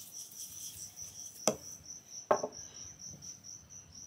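A cricket chirping in a high, steady, evenly pulsing trill, with two sharp knocks about a second and a half and two and a quarter seconds in.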